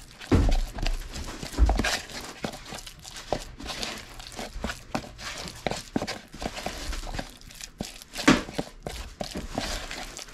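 A flat wooden craft stick stirring and scraping a thick, wet paper-mâché and plaster of Paris mix in a plastic tub: irregular scrapes, squelches and clicks against the plastic, with a few dull knocks of the tub.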